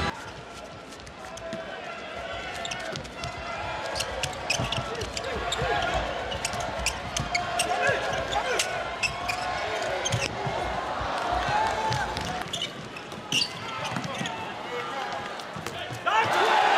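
A handball bouncing and striking the indoor court in a series of short, sharp knocks, over the murmur of voices and crowd noise in a large arena.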